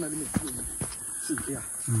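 A steady, high-pitched chorus of insects runs underneath, with a couple of sharp clicks in the first second and brief voice sounds.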